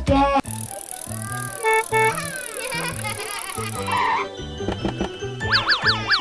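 Cartoon background music with a bouncy bass line, overlaid with sound effects: two short beeps about two seconds in, and a quick run of rising whistle-like glides near the end.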